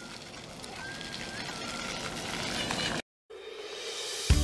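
Outdoor ambience: a steady, faint hiss of background noise that slowly grows louder, with a brief thin whistle-like tone about a second in, cut off abruptly about three seconds in.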